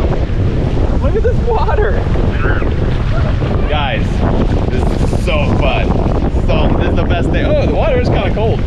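Strong wind buffeting the camera microphone, a steady low rumble that covers everything, with short high calls from voices breaking through now and then.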